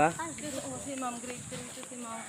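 A man's voice briefly at the start, then faint talk, over a steady high-pitched hiss.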